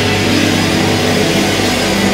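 Live punk rock band with distorted electric guitars and bass holding a dense, steady wall of sound, without clear drum beats.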